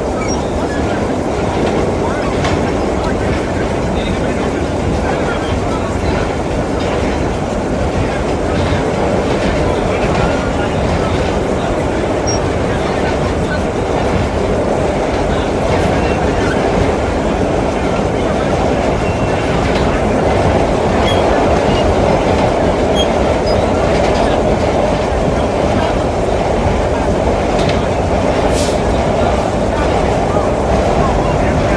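Vintage BMT Standard subway car running at express speed through the tunnel: a loud, steady rumble of wheels on rail and the old car body, with faint clicks over it. It grows somewhat louder in the second half.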